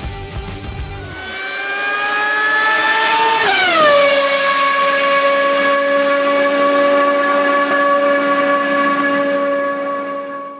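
Music stops about a second in, giving way to a racing car engine. Its revs climb for about two seconds, drop sharply about three and a half seconds in, then hold at one steady pitch.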